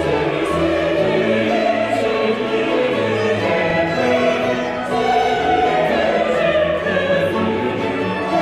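Mixed choir singing with a period-instrument baroque orchestra of strings, flutes and continuo, a continuous full-ensemble passage.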